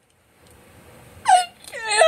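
A high-pitched voice wailing in acted crying: two short cries that fall in pitch, one about a second in and one near the end.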